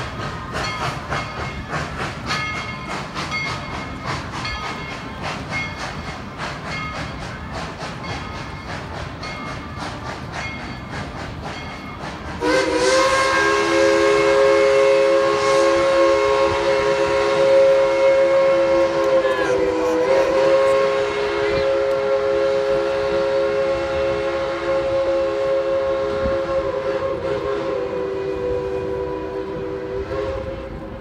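Narrow-gauge steam train pulling out, rolling with a steady clicking rhythm. About twelve seconds in, a steam whistle starts and sounds a long blast of several tones at once. The blast wavers briefly partway through and is then held.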